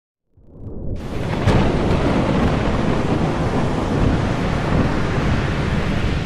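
Thunderstorm at sea: the noise of wind and waves swells in over the first second, a sharp thunderclap cracks about one and a half seconds in, then steady heavy storm noise of wind and sea continues.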